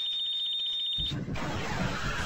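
Edited-in sound effects: a steady, high-pitched electronic tone held for about a second, then a loud, noisy rush with a deep low end.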